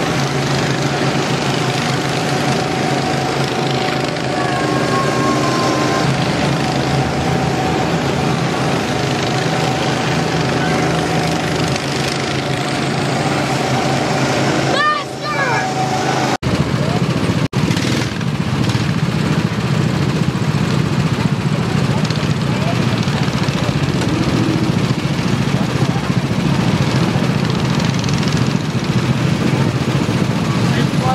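Small petrol go-kart engines running steadily as the karts drive around the track, with voices mixed in. The sound cuts out briefly twice a little past the middle.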